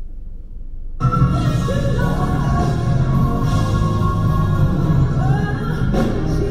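After a second of low hum, a recording of a live gospel performance starts playing: a woman singing long held notes over a band and backing singers.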